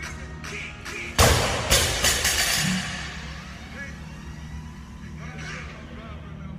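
Loaded barbell with bumper plates dropped from overhead onto a rubber gym floor: a loud bang about a second in, a second smaller bang as it bounces half a second later, then a clatter that dies away over the next second.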